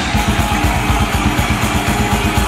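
Death/thrash metal band playing live: distorted electric guitars and bass over fast, driving drumming, in an instrumental passage without vocals.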